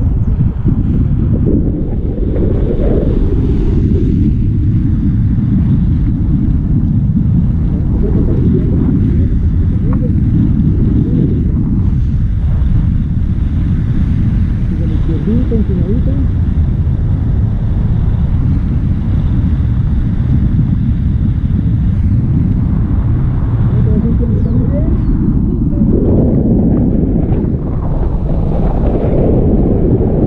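Loud, steady wind buffeting an action camera's microphone in flight under a tandem paraglider: a continuous low rumble of rushing air.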